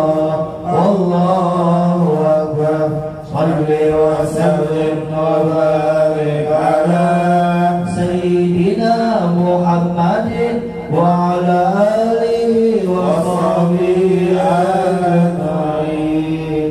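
A man's voice chanting a devotional recitation in long, held melodic phrases, the pitch stepping and sliding between notes, with a few short breaks for breath.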